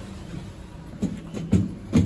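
A few dull thumps inside a lift car, the loudest about one and a half seconds in and at the very end, over a steady low hum.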